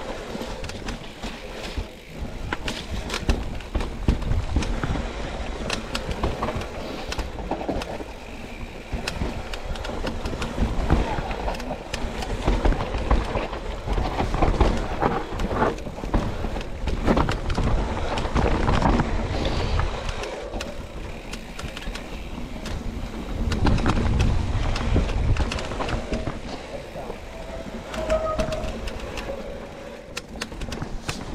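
Mountain bike descending a rough singletrack trail: tyres on dirt and rock, with the bike clattering and rattling over bumps throughout.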